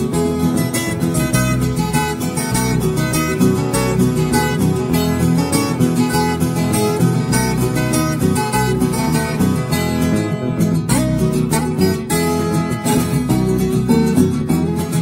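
Instrumental break of a sertanejo pagode: viola caipira and acoustic guitar playing a quick, syncopated plucked rhythm, with no singing.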